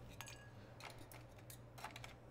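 A few faint, short clinks of a metal bar tool and ice at a glass mixing glass, over near-silent room tone with a low hum.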